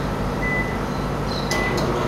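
An old Electrolux microwave oven running with a steady hum, its keypad giving two short high beeps, one about half a second in and one near the end.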